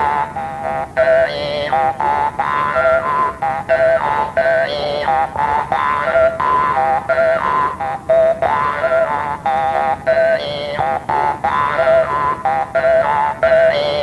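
Hmong jaw harp (ncas) played in short, speech-like phrases with brief breaks. The steady twang shifts its vowel-like colour as the player shapes words, the way the ncas is used to speak a message, here one that cannot be made out.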